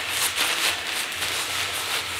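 Thin kite-wing fabric rustling and crinkling in a steady stream of small irregular crackles as it is rolled up by hand on a tabletop.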